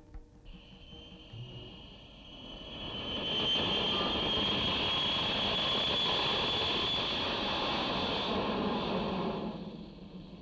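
Jet aircraft passing: a roar with a high whine builds over the first few seconds, holds steady, and fades away near the end.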